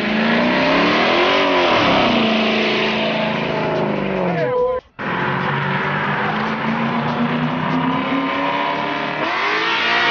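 A car engine revving hard, its pitch climbing and falling again, over a broad rushing noise. The sound breaks off abruptly about halfway through, then the engine runs on, its pitch rising slowly before another rise and fall near the end.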